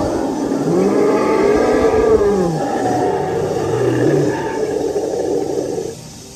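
Recorded dinosaur-roar sound effect: long, low calls that rise and fall in pitch, ending abruptly.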